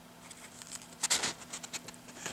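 Paper pages of an old comic book being handled and turned by hand: a quick run of dry rustles and crinkles, loudest about a second in.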